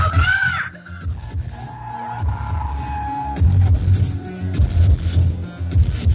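Live electronic synth-pop band playing through a club PA, recorded on a phone with poor, distorted sound: heavy pulsing bass under a short sung phrase at the start, then a long held note.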